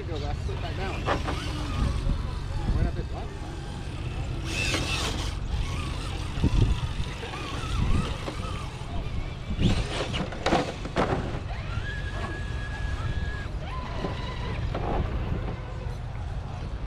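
Indistinct talking from people close by, over a steady low rumble, with a few brief rushing noises.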